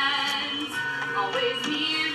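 A song from a stage musical: a female voice singing held, wavering notes over instrumental accompaniment.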